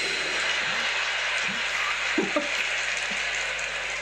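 A live comedy audience applauding and laughing after a punchline: a steady wash of clapping, with a few short chuckles.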